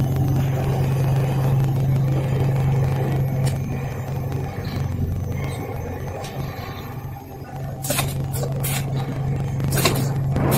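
Spice powder filling line running: the conveyor and machinery give a steady low hum and drone, with several short sharp bursts of noise close together near the end.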